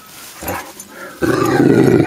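Low, rough growl from a Kangal shepherd dog right at the microphone, starting a little past halfway and lasting under a second, a grumble of greeting rather than a threat.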